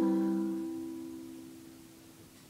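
Final chord of an acoustic ukulele ringing out and fading away evenly at the end of the song.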